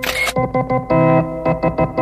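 A single camera shutter click right at the start, over electronic organ music playing held chords with short repeated notes.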